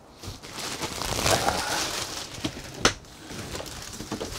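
A Murphy bed being swung up into its wall cabinet: a rustle of its plastic wrapping and bedding as it lifts, then one sharp knock just before three seconds in as it comes up.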